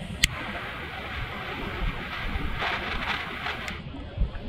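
Butane torch lighter clicking on about a quarter second in, then its jet flame hissing steadily until it is shut off near the end, used to touch up a cigar that is burning unevenly. Wind rumbles on the microphone throughout.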